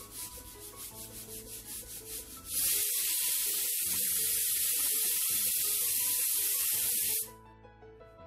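Pressure cooker on a gas flame letting off steam: a soft hiss pulsing about five times a second as the weight starts to lift, then, about two and a half seconds in, a loud steady hissing whistle that lasts nearly five seconds and cuts off suddenly. This is the cooker's first whistle, the sign that the taro inside is cooked.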